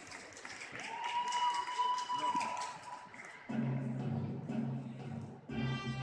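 Audience applauding and cheering in a large hall, with one long held high call among the cheers, then music starts playing about halfway through.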